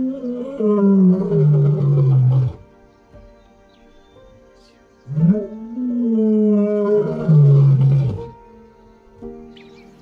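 Male lion roaring: two long calls a few seconds apart, each sliding down in pitch, over soft background music.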